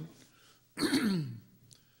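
A man clears his throat once, about a second in: a short rasping sound that drops in pitch.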